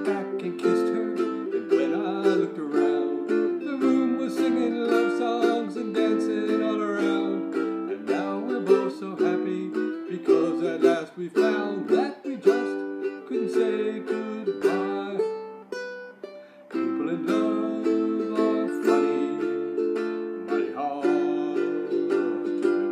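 Solo ukulele playing an instrumental break, strummed chords under a picked melody, with a brief quieter lull about sixteen seconds in.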